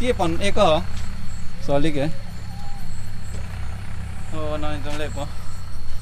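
A voice speaking in three short bursts: near the start, about two seconds in, and again near the five-second mark. Under it runs a steady low rumble.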